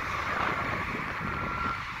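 Wind on the microphone over the steady noise of passing road traffic.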